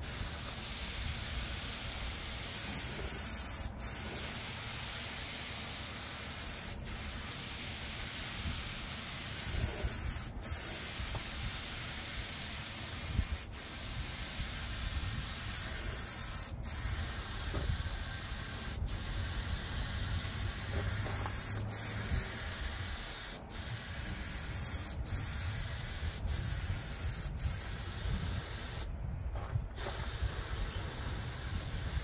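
Compressed-air paint spray gun hissing steadily as a coat of paint goes onto a steel mower deck. The hiss is cut by short breaks every two or three seconds, with a longer break near the end.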